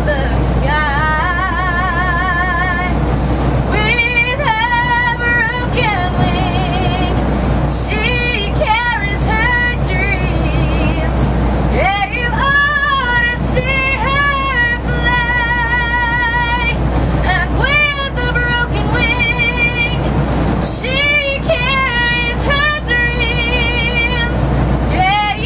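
A woman singing a slow ballad unaccompanied through an airliner's public-address handset, holding long notes with wide vibrato. A steady low drone of the aircraft cabin runs underneath.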